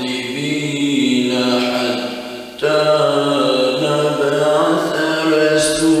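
A man reciting the Quran in Arabic in a slow, melodic chant, holding long notes. There is a short break about two and a half seconds in, then the recitation resumes.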